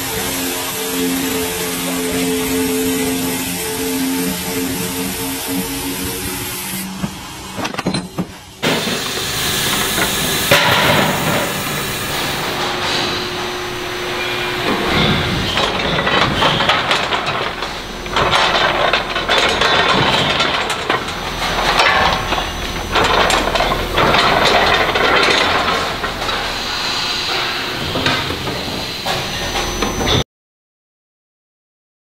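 Factory machine noise. A steady machine hum with held tones, then after a sudden break a loud, clattering din of metal knocks and hissing from a forging line heating steel billets for press work.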